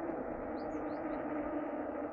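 Steady rolling noise of a Hero Lectro electric fat bike riding along an asphalt road: fat tyres and drivetrain humming evenly. A few faint bird chirps come through about half a second in.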